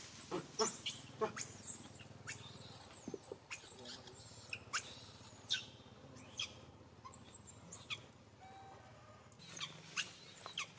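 A young macaque squealing in a run of long, very high-pitched calls for about five seconds, then a few short chirps. It is a juvenile begging to nurse from its mother.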